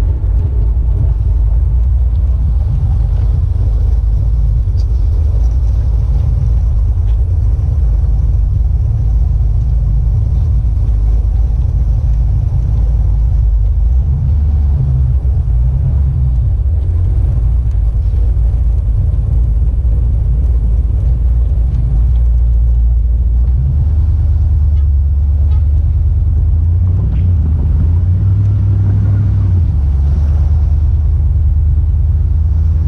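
Steady low engine and road rumble inside the cab of a GM 'OBS' (1988–98 C/K) pickup truck as it drives. The engine note shifts up and down in pitch as speed changes, most noticeably near the end.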